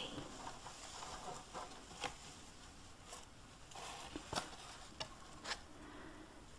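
Faint rustling and crinkling of shiny shred packing filler as hands dig through it in a cardboard mailing box, with a few light clicks scattered through.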